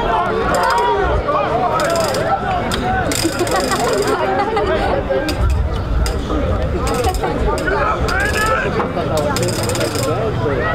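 Many people talking at once, an indistinct chatter of overlapping voices, with scattered short clicks and rustles throughout.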